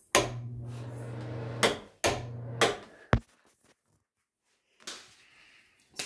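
Bathroom ceiling exhaust fan switched on and off twice with a rocker wall switch. Each switch click brings in a steady motor hum with rushing air, cut off by the next click, first after about a second and a half and then after about half a second. A single further switch click follows about three seconds in.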